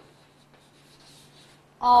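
Chalk writing on a blackboard: faint scratching strokes as letters are written, over a steady low hum.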